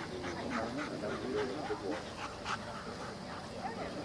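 A dog whining and yipping in a quick string of short, high cries, several a second, as it works at heel.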